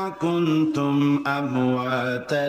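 A man's voice reciting a Quranic verse in Arabic in the melodic chanted style of Quran recitation, holding long notes that step up and down in pitch with short breaths between phrases.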